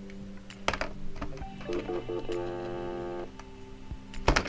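Buttons pressed on a cordless phone handset's keypad: a few sharp clicks, then a run of short beeps and a steady tone lasting about a second and a half, over background music.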